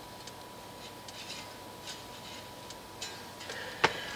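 Faint, irregular light clicks and taps of a small metal tool and fingertips against the strings and frets of a 12-string electric guitar while string height is checked, with one sharper click near the end.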